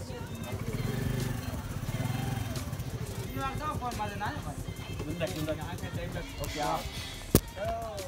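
Indistinct voices of a group of people talking over background music, with a single sharp click about seven seconds in.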